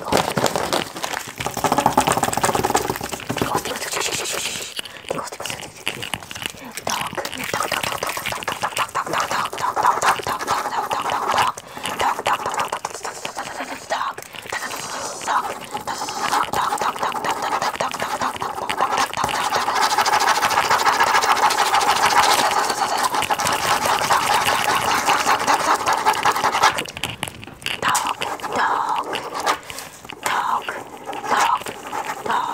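Pen scribbling fast and hard on lined loose-leaf paper, a continuous rapid scratching made of many quick strokes, with the sheet rustling as it is handled near the start.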